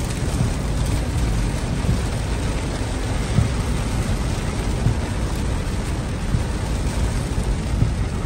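Heavy rain pelting the windshield and roof, heard from inside a car driving on a rain-soaked highway, over a steady low rumble of road and tyre noise.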